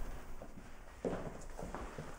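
Quiet footsteps of a person walking into a room, a few soft steps from about a second in.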